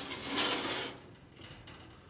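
A homemade stainless steel drip pan tray sliding on its tile-edge-trim sides along the grill's metal runners: a metal scrape that stops about a second in.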